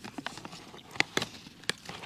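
A spork clicking and tapping against a small metal camping pot while eating: a handful of sharp, irregular clicks, the loudest about a second in.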